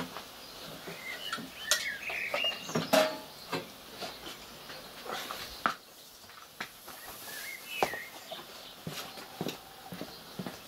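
Scattered light clinks and knocks, loudest about two to three seconds in, with a few short bird chirps outdoors.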